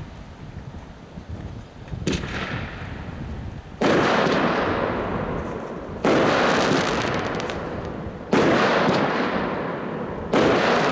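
Lesli Hot Rod firework shots bursting in the air: a soft pop about two seconds in, then three loud bangs about two seconds apart, each trailing off over a couple of seconds. Wind rumbles on the microphone underneath.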